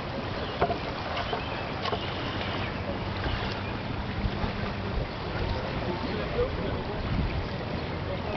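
Steady rushing background noise, with a few faint clicks.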